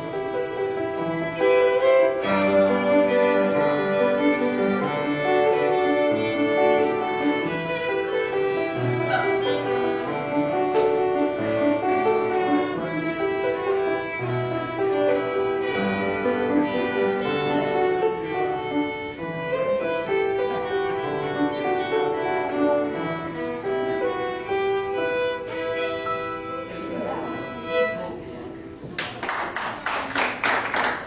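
Live fiddle-led contra dance band, fiddle over piano, playing a lively dance tune in steady rhythm. The tune ends just before the end, and clapping begins.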